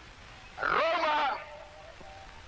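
Benito Mussolini's voice on an archival newsreel soundtrack: one loud, drawn-out phrase in Italian about half a second in, with the pitch bending, over the steady hiss of the old recording.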